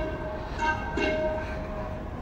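Sikh kirtan music: sustained harmonium-like reed tones holding a chord, pulsing about twice a second.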